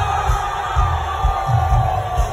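Live rock band playing at a stadium concert, heard from within the crowd: strong drum and bass beats under one long held note that slowly falls in pitch, with crowd noise and cheering mixed in.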